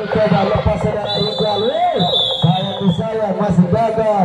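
Spectators' voices and shouting, with a high whistle held for about two seconds in the middle.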